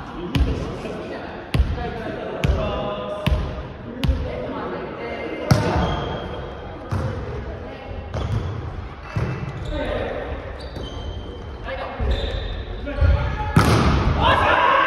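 Volleyball rally in a gymnasium: the ball is hit again and again by hands and forearms, about a dozen sharp smacks echoing in the hall, with players calling out between the hits. The loudest hit comes near the end, as the ball is attacked at the net.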